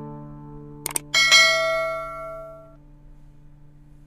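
Subscribe-button animation sound effects: a quick double click a little before one second in, then a bright bell chime that rings out and fades, over a low sustained tone from the background music dying away.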